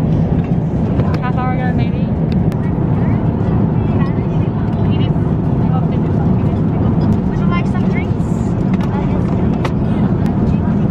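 Steady low cabin noise inside an airliner, the even drone of the engines and airflow, with faint voices of other passengers.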